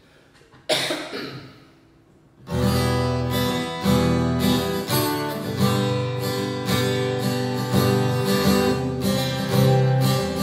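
Acoustic guitar: one chord struck about a second in and left to ring, then steady rhythmic strumming of chords from about two and a half seconds in.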